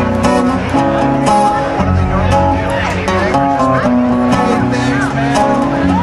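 Live band playing an instrumental passage on guitars, bass and drums, with steady drum hits.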